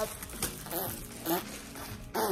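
Plastic bread bag rustling as it is handled, with a couple of short, faint voice sounds.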